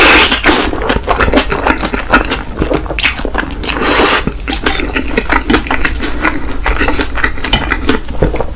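Close-miked slurping and chewing of stir-fried instant noodles (Indomie Mi Goreng). There is a loud slurp at the start and another about four seconds in, with wet chewing and mouth clicks between.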